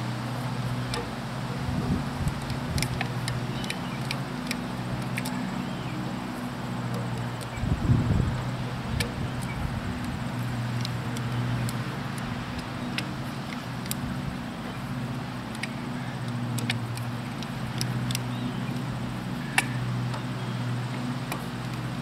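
A steady motor hum runs throughout. Over it come scattered light metal clicks and clinks of a hand wrench spinning lug nuts onto a trailer wheel, with a louder clatter about eight seconds in.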